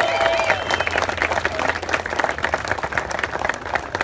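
Audience applauding: a dense, steady run of hand claps, with voices in the first second.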